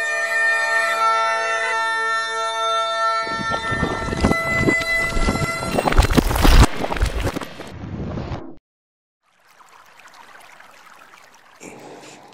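Bagpipe music, a steady drone under a held melody, joined partway through by a loud crashing, rumbling sound effect of breaking stone. Both cut off suddenly about two-thirds of the way through, leaving a moment of silence and then faint room noise.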